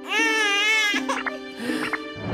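A cartoon baby howling: one high, wavering wail about a second long, over steady background music.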